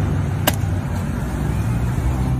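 Street traffic noise, a steady low rumble of a passing car, with one sharp slap about half a second in as a bluegill is thrown down onto the pavement.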